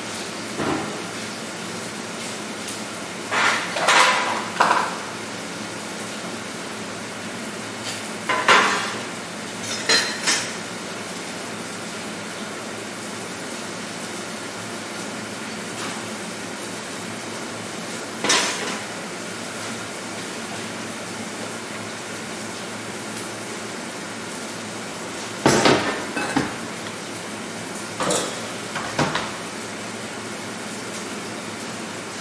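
Metal baking trays, bowls and utensils clattering as they are handled and set down on a stainless-steel kitchen bench, in several short bursts with pauses between.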